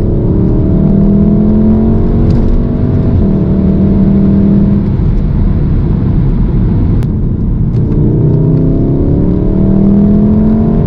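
VW Golf R Mk7's turbocharged 2.0-litre four-cylinder engine heard from inside the cabin, pulling with its pitch climbing through the revs for the first three seconds or so. It then eases into a steadier drone under road noise, and climbs again from about eight seconds in. A single sharp click comes about seven seconds in.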